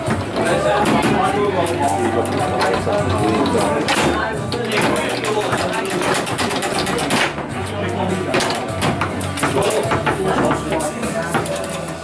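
Foosball table in play: the ball and the players' rods and men clacking against it in sharp clicks, with a fast flurry of hits in the middle. Background music and voices run underneath.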